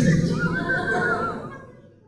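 A man's high, wavering vocal sound lasting about a second, trailing off and fading to near silence near the end.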